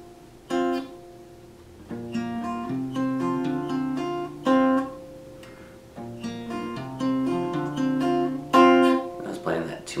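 Acoustic guitar capoed at the third fret, fingerpicked in a slow arpeggio pattern of single plucked notes that ring into each other. There are two phrases with a short pause between them.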